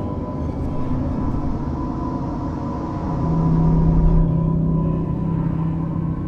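Dark ambient background music of low sustained drones; a deeper held note comes in about three seconds in, with a slight swell.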